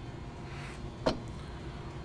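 Fold-down metal airstair of an aircraft crew door giving one sharp click about a second in as its lower section swings down and seats, over a low steady hum.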